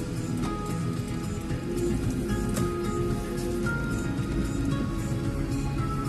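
Background music with slow, held notes over a low rumble.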